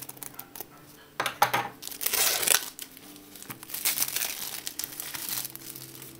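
Clear plastic shrink-wrap being torn open and peeled off a phone box, crinkling in irregular bursts, the loudest about two seconds in.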